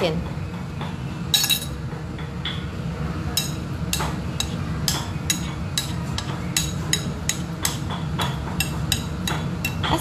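A metal spoon clinking against a ceramic plate of minced pork in a run of light, quick clinks, about two or three a second, starting about three seconds in. A steady low kitchen hum runs underneath.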